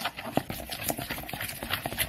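A spoon stirring thick gram-flour batter in a glass bowl: quick, irregular clicks of the spoon against the glass mixed with wet scraping.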